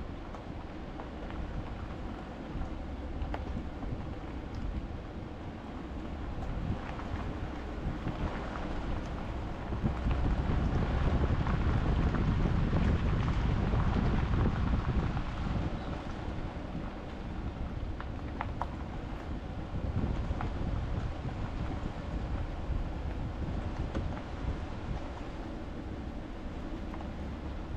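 Chevrolet Silverado pickup truck driving slowly along a dirt trail, heard from a camera mounted on its body: a low rumble of engine and tyres on dirt, with wind on the microphone and a few small ticks. It grows louder for several seconds midway.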